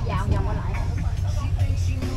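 Open-sided shuttle bus running along, a steady low rumble of engine and road heard from on board, with people's voices over it.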